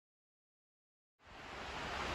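About a second of dead silence, then steady rain on a tin barn roof rises in quickly and keeps up as an even hiss. It is loud even through the building's insulation.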